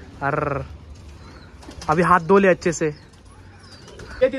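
Domestic pigeons cooing, with a short voiced call near the start and a few spoken words about two seconds in.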